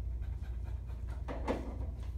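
A short breathy vocal burst from a person, about a second and a quarter in, over a steady low room hum.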